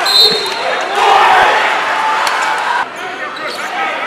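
Basketball game sound on an indoor court: crowd voices in a large hall, a brief high sneaker squeak at the start and a ball bouncing. The sound drops abruptly to a quieter level a little before three seconds in.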